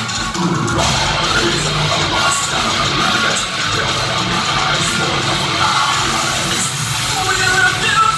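Metal band playing live: distorted electric guitars, bass and drums, heard loud and dense from inside the crowd.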